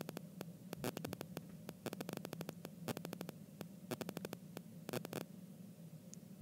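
Stylus tip clicking against an iPad's glass screen as short, quick strokes are drawn, with many small ticks coming in quick runs. A steady low electrical hum lies underneath.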